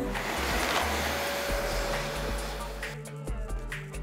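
Vacuum cleaner running on carpet, a steady rush of noise with a faint motor whine, which stops about three seconds in. Background music plays underneath.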